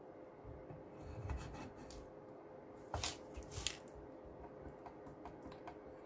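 A cast-iron axlebox is slid into the horn-block gap of steel locomotive frames for a test fit: soft rubbing of metal on metal and gloved hands, with two light metallic clicks about three seconds in, over a faint steady hum.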